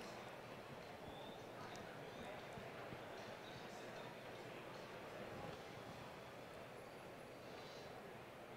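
Faint, steady background room noise with indistinct distant voices and a few small clicks.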